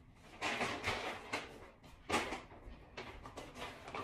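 Rustling and handling noise of large shopping bags being picked up and carried, with a sharper burst of rustle about two seconds in.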